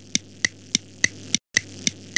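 Clock ticking sound effect, about three crisp ticks a second over a low steady hum, with a brief break about one and a half seconds in.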